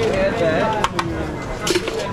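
Busy restaurant kitchen: indistinct voices of the brigade, with two sharp clicks of a metal utensil just under a second in as a grilled fish is moved from tray to plate with a fish slice, and a brief hiss near the end.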